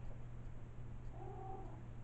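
A faint, short, high-pitched call about a second in, lasting around half a second and rising then falling slightly in pitch, over a steady low hum.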